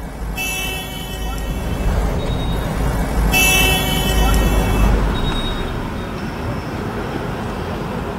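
Car driving slowly, heard from inside the cabin as a steady low road and engine rumble, with two short shrill horn toots, one about half a second in and one about three seconds in.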